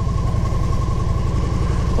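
Victory motorcycle's V-twin engine running steadily at low road speed, a dense low rumble with a steady high whine above it.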